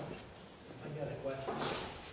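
Faint, low talking in the room, with a brief rustling scrape about one and a half seconds in.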